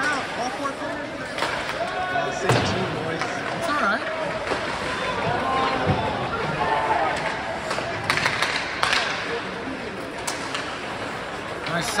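Ice hockey rink during live play: voices calling out over crowd noise, broken by sharp knocks of puck and sticks against the boards and glass. The loudest knock comes about two and a half seconds in, with a cluster around eight to nine seconds in.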